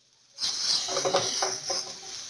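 Chopped onions sizzling in a hot frying pan on high heat as they are stirred with a wooden spatula; the steady hiss starts suddenly about half a second in.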